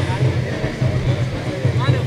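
Distant band playing, heard mainly as a low, pulsing beat under faint crowd voices.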